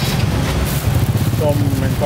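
Steady low rumble of a running motor vehicle engine in the street, with a voice speaking over it near the end.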